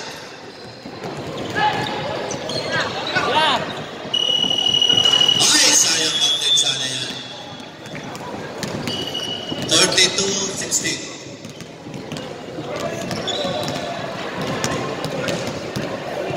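Indoor basketball game in a large echoing gym: the ball bouncing, sneakers squeaking and players and spectators shouting, with a referee's whistle blown in a long blast about four seconds in and shorter blasts around nine and thirteen seconds.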